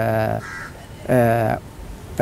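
A man's voice holding two drawn-out vowel sounds at a nearly steady low pitch, like hesitation fillers between words, one at the start and one about a second in.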